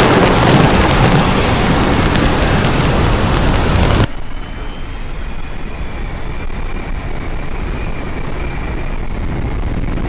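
Audio played as the sounds of Jupiter. A loud rushing rumble drops abruptly about four seconds in to a quieter hiss with faint, slightly falling high tones.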